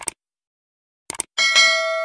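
A few light clicks, then one bright, bell-like metallic ring that fades away over about a second and a half.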